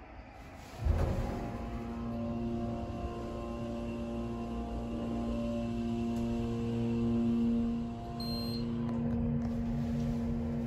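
Montgomery KONE hydraulic elevator setting off with a thump about a second in, then its hydraulic pump motor humming steadily with several held tones while the car travels.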